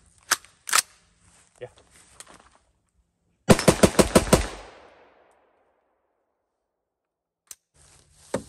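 A gun fires a rapid burst of about nine shots in under a second, and the echo trails off after it. Two sharp clicks come before the burst.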